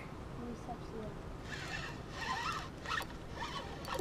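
A spinning reel being cranked to retrieve line, a faint rapid whirr that starts about a second and a half in and comes in two stretches. Quiet voices are faintly heard behind it.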